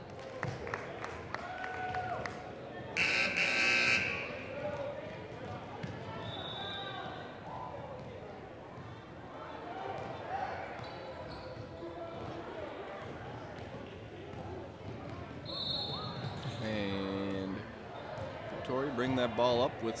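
A basketball being dribbled on a hardwood gym floor, with voices of players and spectators echoing in a large hall. There is a loud short burst about three seconds in, and a brief buzz-like tone near the end.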